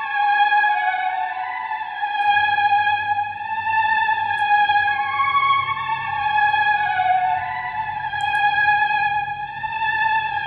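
Ambient vocal sample playing back at normal speed, without half-time: sustained, slowly wavering high tones like a choir pad, with a low hum joining about two seconds in. It sounds too high, clashing with the piano and the other elements of the sample.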